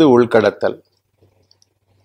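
A man's voice speaking for the first moment, then a pause holding only a faint steady electrical hum and a few faint ticks.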